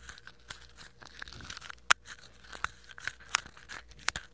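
Quiet, scattered clicks and crackles of rustling, with one sharper click about two seconds in.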